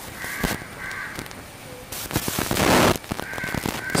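Crows cawing, a few short calls spread through the pause, with a brief rush of noise about two seconds in.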